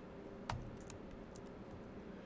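Typing on a computer keyboard: one louder key press about half a second in, followed by a few lighter key taps.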